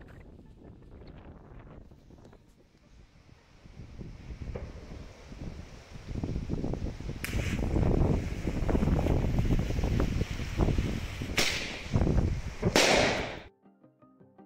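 Small ground firework set off by an electric igniter: from about six seconds a loud crackling noise with three sharp cracks, the last the longest, cut off suddenly just before the end.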